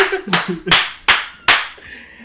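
A run of about six sharp hand claps, a third to half a second apart, dying away near the end, with a voice under the first few.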